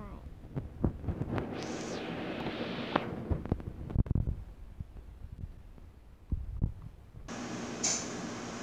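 Small plastic toy pieces being handled, with scattered light clicks and taps and a brief rustle near two seconds in.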